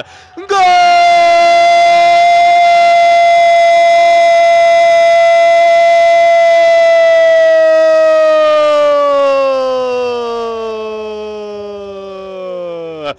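A male football narrator's long drawn-out shout of "Gol" for a goal, in Portuguese. It starts about half a second in and is held on one note for several seconds, then sinks in pitch and grows softer over the last few seconds.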